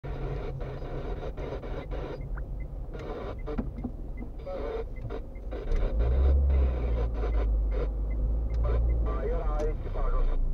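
Low rumble of a car's engine and tyres heard from inside the cabin while driving slowly, getting louder about six seconds in, with a voice talking in the background.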